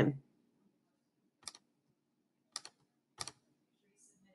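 Three short, sharp clicks of computer controls being operated: one about a second and a half in, then two more close together near the end.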